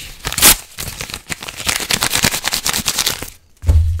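A sheet of paper being torn and crumpled by hand right at the microphone: a dense run of close, crisp crackles and rips. Near the end there is a brief pause, then a low rumble.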